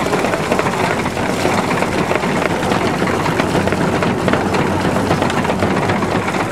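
Horse-powered inclined treadmill driving a small wooden grain separator, running with a steady, dense mechanical rattle and clatter.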